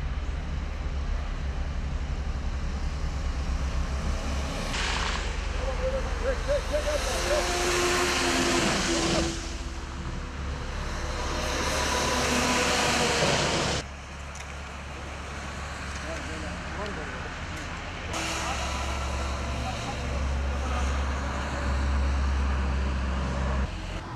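Outdoor roadside sound: heavy vehicle engines running with a steady low rumble and traffic passing on a wet road, with faint voices in the background. The sound changes abruptly a few times.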